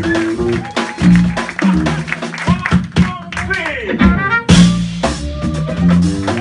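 Live jazz band playing: sustained electric bass notes under drum kit, guitar and keyboard, with a lead line that bends in pitch, and a cymbal crash a little past the middle.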